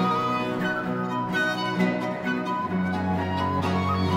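Instrumental passage of early Scottish music on period instruments: a wooden transverse flute plays the melody over violin, a bowed bass and a plucked lute, with no voice. A deeper bass note comes in near the end.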